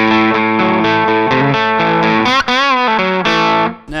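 Electric guitar with P90 pickups played through a clean valve amp (Palmer DREI), with the BearFoot Sea Blue EQ boost pedal bypassed. Ringing chords are played, with a wavering vibrato on one chord a little past halfway, and the playing stops just before the end.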